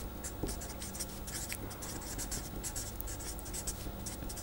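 Marker pen writing on paper: a run of short, faint strokes of the tip scratching across the sheet as words are written.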